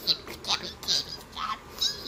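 A high-pitched, squeaky voice giving a run of short squeals, about five in two seconds.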